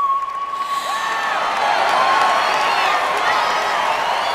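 A live audience cheering, whooping and applauding at the end of a song. The singer's long held final note fades out under the cheering in the first second or two.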